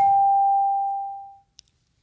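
A game-show studio chime: one clear electronic bell tone that rings and fades away over about a second and a half, the cue that follows the call for the Fast Money clock.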